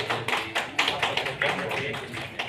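A few people clapping, in uneven claps several times a second.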